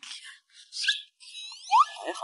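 Squeaky, whistle-like comic sound effects: a short rising squeak a little under a second in, then a run of falling whistle glides and a quick rising sweep near the end.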